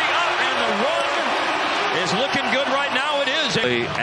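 Live NBA game broadcast sound: a basketball bouncing on the hardwood court over voices and the murmur of the arena crowd.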